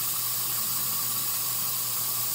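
Bathroom tap running steadily into a sink, a constant even hiss of water.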